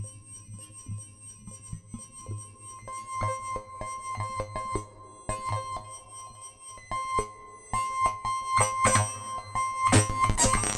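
Eurorack modular synthesizer patch built around a Benjolin and an Excalibur filter, playing a chaotic electronic texture: a low pulse about twice a second under steady high tones. From about three seconds in, a denser layer of clicking, stacked tones builds and grows louder near the end as the Benjolin's knobs are turned.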